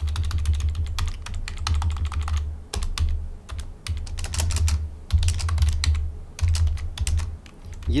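Computer keyboard typing: rapid keystrokes in bursts with short pauses, as lines of code are deleted and a new line is typed.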